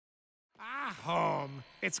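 Silence for the first half second, then an animated male character's voice making a long drawn-out wordless 'ahh', rising and then falling in pitch, before he starts to speak near the end.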